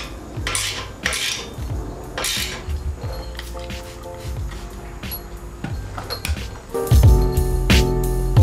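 Metal hand tool clinking at the exhaust mounting bolts and a few short hisses from a spray bottle of cleaner on the chrome mufflers, over background music that gets louder near the end.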